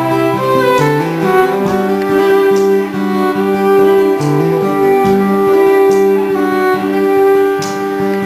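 Live acoustic country band in an instrumental break: a bowed fiddle plays long held melody notes over strummed acoustic guitars.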